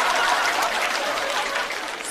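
Studio audience laughing and clapping, dying away over the two seconds.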